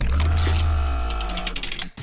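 A short musical transition sting: a deep bass hit that fades over about a second and a half under a held chord, with a quickening run of ticks on top, cutting off near the end.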